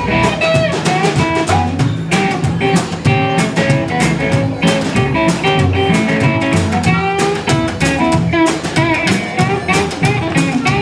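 Live blues band playing: electric guitar over a plucked upright double bass and a snare drum kit, with a steady beat.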